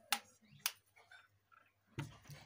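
Two sharp clicks about half a second apart.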